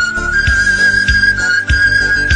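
Panpipe music: a high, breathy melody note held long, stepping up slightly about a third of a second in, over a steady drum beat.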